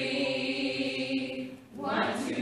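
A cast of singers doing a vocal warm-up together, holding one sustained note that breaks off about one and a half seconds in; the next note starts just before the end.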